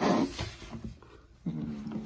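Calico kitten growling low with a toy mouse in its mouth, the possessive growl of a cat guarding its prey. It opens with a loud, harsh burst, then a second growl starts about one and a half seconds in.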